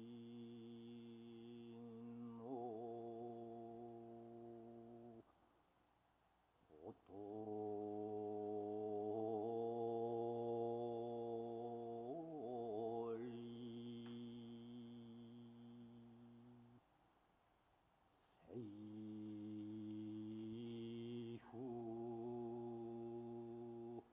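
Background music of a deep voice chanting long held notes on one low pitch, each lasting several seconds, with a high ringing overtone above it and short breaks between the notes.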